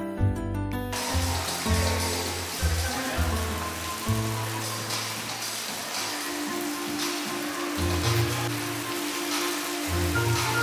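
Steady rain hiss comes in suddenly about a second in, with background music and its held bass notes going on beneath it.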